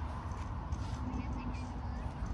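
Outdoor city-park ambience: a steady low rumble of distant traffic and wind, with a few faint high bird chirps about a second in.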